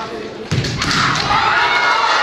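A kendo fencer's attack: a sudden thud about half a second in, from a stamping step or bamboo-sword strike on the wooden gym floor, followed by loud, high-pitched shouts.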